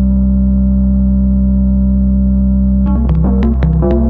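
Eurorack modular synthesizer playing a generative patch: a deep, steady bass drone under held tones, then, about three seconds in, a quick run of short pitched notes with sharp attacks.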